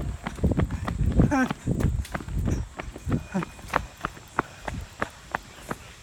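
Footsteps of a person running on a dirt woodland path: irregular thuds, about two or three a second.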